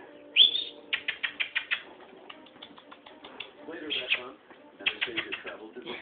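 Small puppies playing on a hard floor: a run of quick clicks and scrabbling, coming in clusters about a second in and again after four seconds, with one brief high sound near the start.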